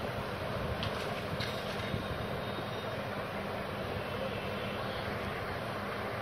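Steady background hum with an even hiss, running without change; no distinct event stands out.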